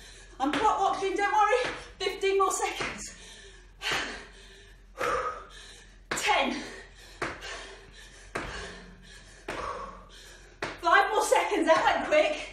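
A woman's voice breathing hard and calling out in short bursts during jump exercises, the bursts coming roughly once a second in time with her jumps.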